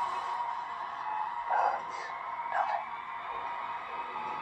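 Television drama soundtrack: a held music tone over background sound, with a few brief, indistinct voices.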